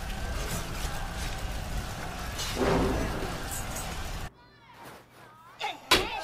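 Battle sound effects from an anime soundtrack: a dense, noisy din of fighting with a shout about two and a half seconds in. It cuts off abruptly a little past four seconds into a much quieter stretch with faint voices, and a sharp hit comes just before the end.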